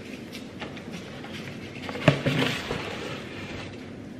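Boxes and other items handled on a kitchen counter: a few light knocks, one sharper knock about two seconds in, and a short rustle after it, as boxes of aluminium foil and plastic wrap are gathered for wrapping casseroles.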